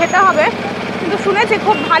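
A woman speaking in short bursts at the start and near the end, over the steady low hum of an idling vehicle engine in street traffic.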